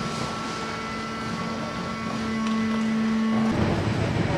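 Steady industrial machine noise with a low, constant hum, growing louder about two seconds in and cutting off abruptly near the end.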